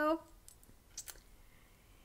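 The end of a woman's spoken word, then a quiet pause broken by a few faint, short clicks about a second in.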